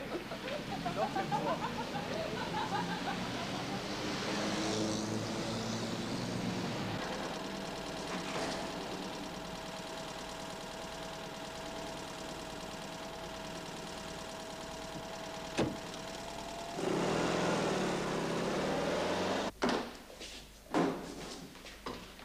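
A car engine running, with a steady high tone through the middle and a louder stretch a few seconds before the end. Near the end come a few sharp knocks.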